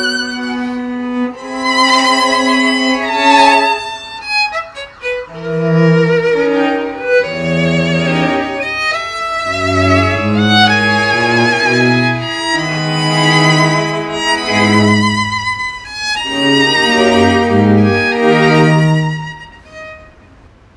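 String quartet of two violins, viola and cello playing sustained bowed notes with vibrato, the cello adding low notes under the violins. The playing stops near the end.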